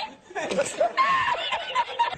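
A man laughing hard in breathless, high-pitched, wavering squeals: the 'El Risitas' laughing meme clip.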